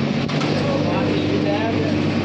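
JCB backhoe loader's diesel engine running steadily as its bucket presses down on a sheet-metal kiosk roof, with one short knock about a third of a second in. People's voices are heard over the engine.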